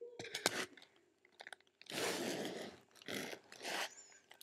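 Plastic binder sleeve pages crinkling and rustling as they are handled and turned. It starts with a few sharp clicks, then comes a longer crinkle about two seconds in and two shorter ones near the end.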